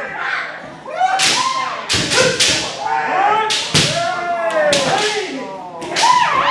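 Kendo sparring: bamboo shinai land on armour with sharp cracks, several times and often in quick pairs. Fencers give long pitched kiai shouts and stamp on the wooden floor.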